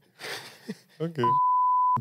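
Brief man's speech, then a single steady high-pitched censor bleep lasting under a second near the end, dropped in by the editor over a spoken word that has been muted.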